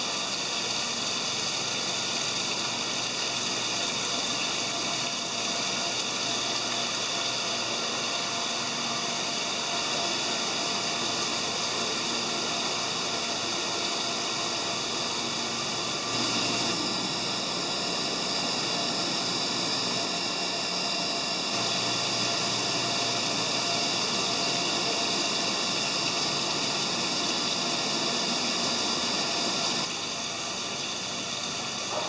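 Steady rush of water circulating through marine holding tanks, with the running of their pumps and aeration; it gets a little louder about halfway through.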